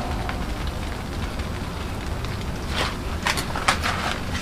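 Blackstone propane griddle hissing steadily as bread and cheese sizzle on its hot top. Near the end come a few short, sharp crinkles as a plastic food pouch is handled.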